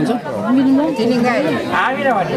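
Speech only: people talking, with voices overlapping near the end.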